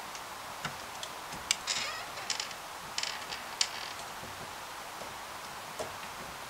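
Plastic parts of a DeLorean scale-model door being pressed and worked together by hand as the interior trim panel is fitted: a few sharp clicks and short scraping sounds, mostly in the first four seconds, over a steady hiss.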